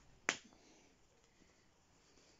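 A single sharp click, a press-stud snap on a cloth nappy being pressed shut.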